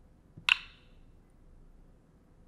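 A single sharp click about half a second in, with a short ringing tail, as a dragged code block is dropped and snaps into place in the Blockly editor.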